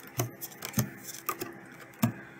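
Playing cards dealt one at a time onto a table into two piles: a light tap as each card lands, about every half second.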